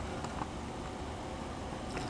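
Desktop PC running: a steady, quiet whir from the CPU cooler fan, which covers the power supply's 12 cm fan, which is very quiet.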